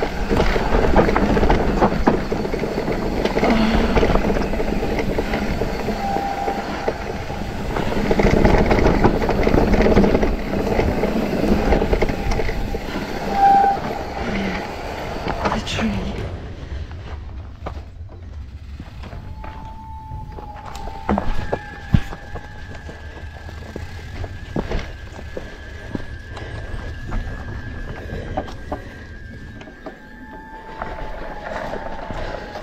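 Nukeproof Megawatt electric mountain bike ridden down a rough dirt trail: tyres, chain and suspension rattling, with knocks over roots and rocks. It is loud and busy for the first half, then quietens about sixteen seconds in, with a steady high tone and short gliding tones over the lighter rattling.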